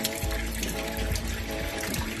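Tap water running into a sink, over background music with steady held notes.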